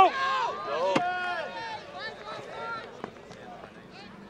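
Coaches and spectators shouting and calling out over a youth lacrosse game, several voices at once, loudest at the start. A sharp knock comes about a second in and another about three seconds in.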